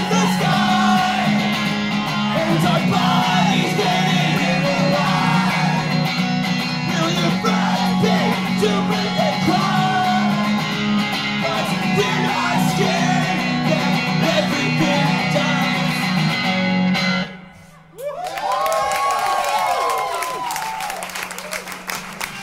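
An electric guitar strummed hard under a man singing, played live; the song stops abruptly about 17 seconds in. The audience then cheers and whoops.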